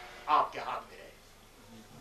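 A man's voice in a short utterance about half a second in, then a pause with only low background noise.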